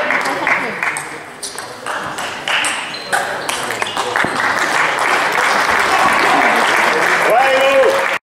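Table tennis ball clicking sharply off bats and table, then applause starting about halfway through and carrying on as the match ends, with a shout near the end.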